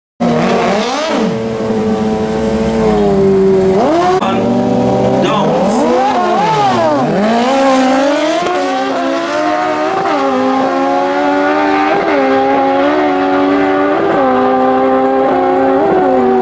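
Drag-racing motorcycles, one a Kawasaki ZX-14 with its inline-four engine, revving up and down at the start line, then launching and pulling hard down the strip. The engine note climbs and dips slightly about once a second as the bikes shift up through the gears.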